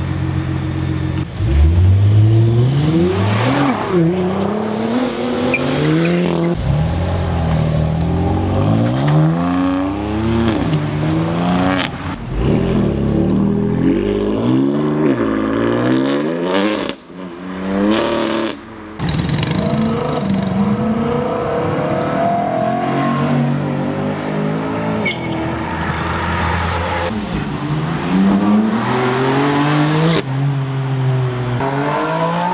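Sports car engines accelerating hard, several cars one after another. The engine note climbs in pitch and drops back again and again as they rev up through the gears.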